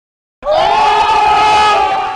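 Shouting voices holding one long, loud 'Ohhhh', an inserted sound effect that starts about half a second in and holds steady almost to the end.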